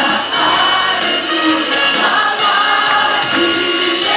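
Live Christian worship song led by several singers on handheld microphones through a sound system, with steady amplified musical backing.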